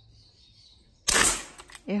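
Sumatra 500cc air rifle firing a single shot about a second in: a sharp crack that dies away over about half a second.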